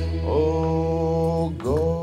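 A man singing long held notes into a microphone, each note sliding up at its start before holding steady, two notes in all, over a steady low backing tone.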